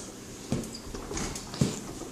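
Two light knocks, about a second apart, from a toddler walking and pushing a plastic ride-on toy across a tile floor.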